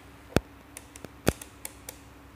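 Sharp plastic clicks from hands handling the electronics trainer panel's knobs and test leads: two loud clicks and about six lighter ones, over a faint steady electrical hum.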